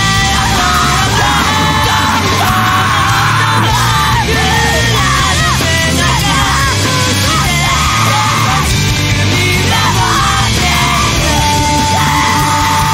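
Chaotic emo band recording: dense, loud distorted guitars, bass and drums with yelled vocals over them. A single high note is held steady near the end.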